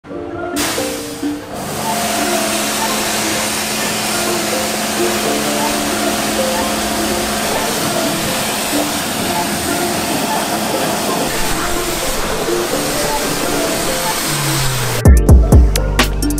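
Pressure washer spraying water, a steady hiss, with music playing underneath. About 15 seconds in the spray stops and a music track with a heavy bass beat takes over.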